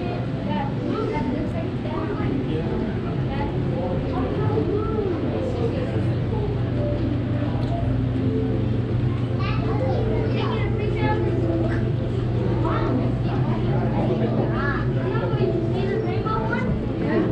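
Indistinct chatter of many visitors, children's voices among them, with no single talker standing out, over a steady low hum.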